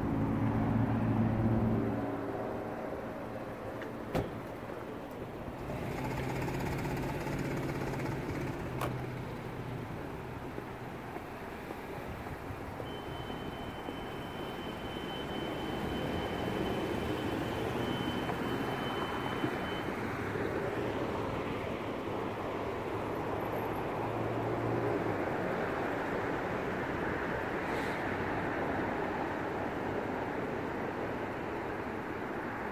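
Street traffic and idling vehicle engines: a continuous rumble of road noise, with a thin steady high tone for about seven seconds midway.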